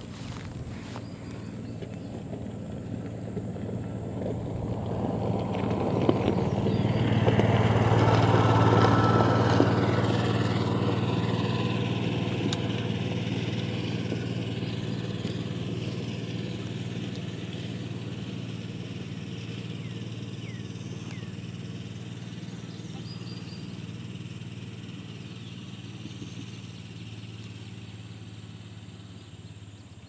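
A passing engine: a steady low hum that grows louder to a peak about eight seconds in, then slowly fades away.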